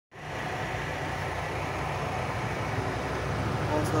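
Heavy truck diesel engine idling steadily, heard from underneath near the freshly replaced oil pan.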